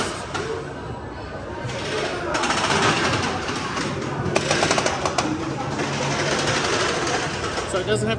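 A ride vehicle's ratcheting lap bar clicking as it is pushed down, a quick run of clicks about halfway through, over a steady din of voices and music. The bar stops a couple of clicks short of locking: too tight for the rider.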